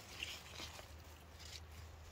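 Faint rustling of leaves and soil as a garden radish is pulled up by hand, with a brief soft sound about a quarter second in over a low steady hum.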